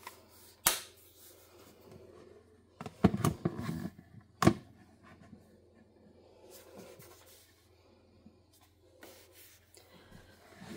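Handling sounds as a cased phone is set onto a plastic wireless charging stand: a click about a second in, a cluster of knocks and taps around three seconds in, and a sharp click at about four and a half seconds.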